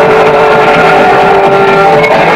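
Live rock band with a loud, distorted electric guitar holding one steady note over the band's noise; the note stops just before the end.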